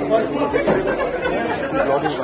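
Many voices talking over one another: the chatter of a crowded canteen.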